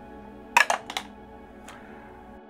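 A few quick, sharp clicks of plastic gaming dice knocking together and against the table, bunched about half a second in, with one more faint click near the end, over soft background music.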